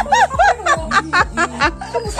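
High-pitched giggling laughter in a fast run of short bursts, about six or seven a second, over background music.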